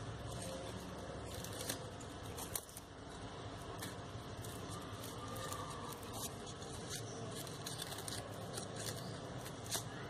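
Faint rustling and crinkling of crepe paper being handled, pressed and wound onto a wire stem, with many small scattered crackles.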